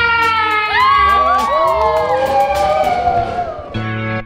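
Several voices holding long sung notes and whooping, some sliding up and down in pitch, over music with a fast, steady beat.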